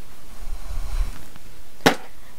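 Makeup items being handled: a low rustle of movement against the clip-on mic, then one sharp click near the end.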